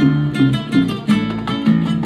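Live Cuban band music: a nylon-string acoustic guitar plays a run of quick plucked melody notes over an electric bass line.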